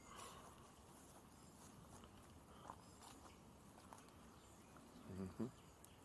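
Near silence: faint outdoor background with a few soft, scattered ticks.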